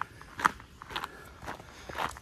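Footsteps of a person walking at a steady pace on a forest trail while carrying a weighted backpack, about two steps a second.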